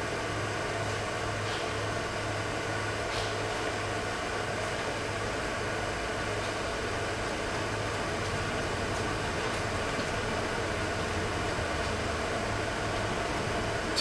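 Steady low hum with a faint hiss of room noise, unchanging throughout, with no distinct events.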